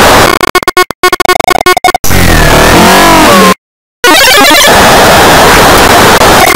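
Heavily distorted, clipped remix audio at full volume: a harsh blare that stutters in rapid choppy cuts, then warbling pitch glides, a sudden short dropout to silence, and more loud noisy blare.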